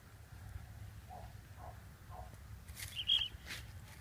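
Wind rumble on the microphone, with a short shrill note about three seconds in, set between two brief rushing sounds.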